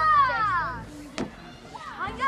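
A child's high-pitched call, gliding down in pitch over about a second, followed by a single sharp click.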